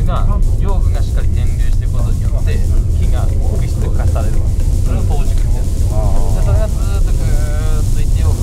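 Steady low drone of a moving van's engine and road noise heard inside the cabin, with voices and background music over it.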